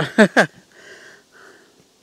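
A man sputtering and blowing through his lips to clear loose sheepskin hairs from his mouth: two short voiced sputters, then two soft puffs of breath.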